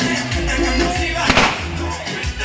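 Latin dance music with a steady bass beat, and a single sharp firecracker bang about a second and a half in from the burning effigy.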